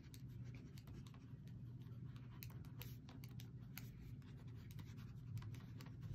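Faint scratching of a multicolour ballpoint pen on a book's paper page, in short irregular strokes as it colours in, over a low steady hum.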